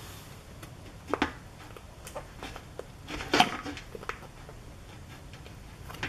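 Silicone mold being flexed and gelatin Jell-O Jigglers peeled out of it: faint handling rustles and light clicks, with two louder brief sounds about a second in and midway through.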